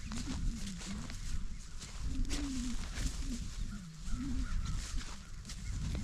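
American bison cows grunting, a series of short, low, wavering grunts: a sign that they are stressed at being separated from the herd.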